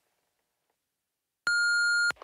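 A voicemail beep: one steady electronic tone about half a second long near the end, marking the start of the next recorded message.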